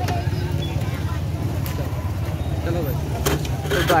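Small motorcycles running nearby, a steady low rumble, with scattered voices of a crowd in the background.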